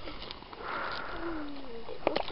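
A short breathy rush, then a faint voice sliding down in pitch.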